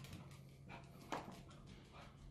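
Faint, quick clicking of a small terrier's claws on a hardwood floor as it trots about, with one louder knock about a second in, over a low steady hum.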